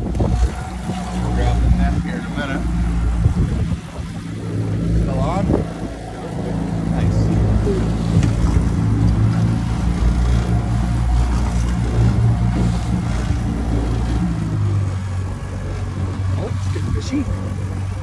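Boat's outboard motor running steadily at trolling speed, with indistinct voices over it.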